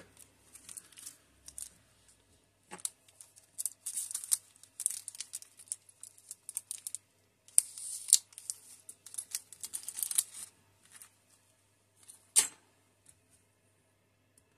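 Crinkling of a thin clear plastic bag of small kit parts being handled and rummaged through, in irregular bursts, followed by one sharp click near the end.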